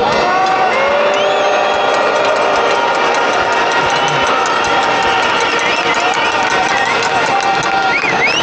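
A large crowd of demonstrators shouting and cheering in a steady, dense din, with many separate voices calling out over it.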